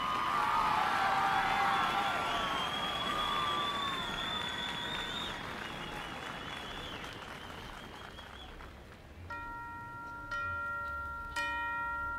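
Audience applauding and whistling after a marching band number ends, fading away over about nine seconds. Near the end, a few ringing bell tones are struck about a second apart as the next piece begins.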